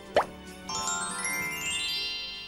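Short cartoon-style TV jingle: a quick downward-sliding sound effect, then, just under a second in, a held bright chord with a sparkly run of high notes rising in pitch.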